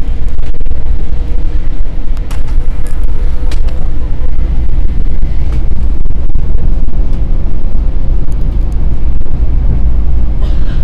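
Cabin noise of a Metro-North M7 electric commuter train running at speed: a loud, steady low rumble, with a faint steady hum that fades about seven seconds in and a few sharp clicks in the first four seconds.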